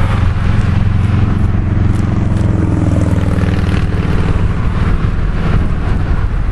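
Motor vehicle passing on the road alongside, a loud steady low engine hum whose pitch dips around the middle as it goes by.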